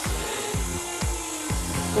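Background music with a steady low beat, about four beats a second, over the faint whir of an electric stand mixer beating cream and mascarpone.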